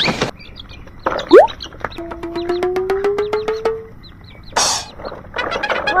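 Cartoon-style sound effects: a quick rising whistle, then a long, slowly rising tone over a rapid run of clicks, a short burst of hiss, and more clicking near the end.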